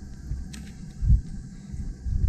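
Low rumbling thumps on the microphone, the strongest about a second in, with a short click just before.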